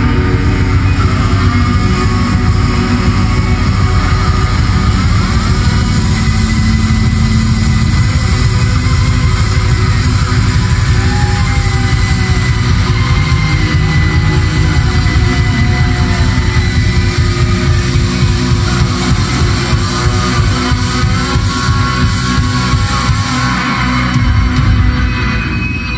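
Live rock band playing loudly: electric guitars, bass, keyboards, saxophone and drums in a dense instrumental passage with a fast, even beat, heard from the audience.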